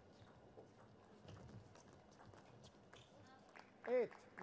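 Celluloid-plastic table tennis ball clicking off rubber-faced bats and the table in an irregular run of sharp ticks during a doubles rally. Near the end, a short shout at the point's finish.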